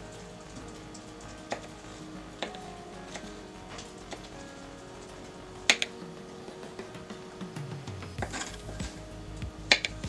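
Kitchen knife tapping on a cutting board while mincing garlic: scattered light knocks, one sharper knock about halfway through, and quicker taps near the end.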